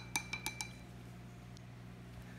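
Wooden craft stick clinking against a glass tumbler of lye solution, several light ticks in the first moment with a brief ringing of the glass. Then only a faint steady low hum remains.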